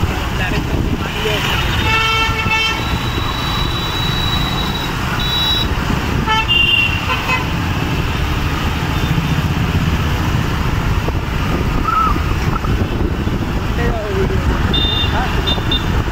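Busy street traffic with auto-rickshaws driving past, a low rumble of engines and road noise. A vehicle horn beeps in a quick series of short toots about two seconds in, with further short horn beeps around six seconds and near the end.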